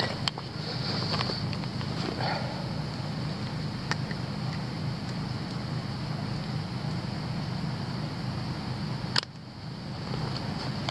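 A steady low rumble with a few sharp clicks of dry kindling sticks being handled and laid, about three in all. The rumble drops away suddenly just after the last click, near the end.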